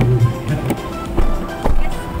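Background music, with three short sharp clicks a little over a second in, as a car door is unlatched and opened.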